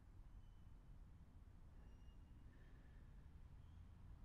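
Near silence: faint outdoor background with a low steady rumble and a few faint, brief high chirps.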